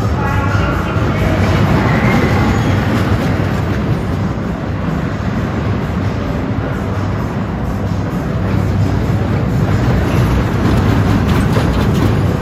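Small steel roller coaster train rumbling and rattling along its track, loudest about two seconds in and again near the end as it runs close by.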